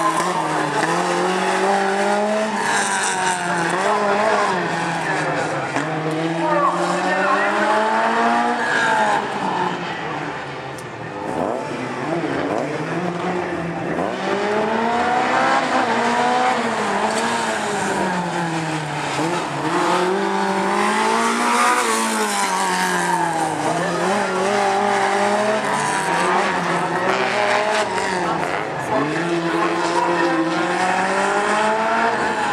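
Alpine A110 rally car's rear-mounted four-cylinder engine revved hard and lifted off over and over as it is driven through a tight slalom. The engine note climbs and drops every two to four seconds, dipping briefly about ten seconds in.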